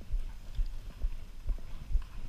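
A horse's hooves thudding on the sand footing of an indoor arena as it moves along under a rider, a steady beat of about two dull thuds a second.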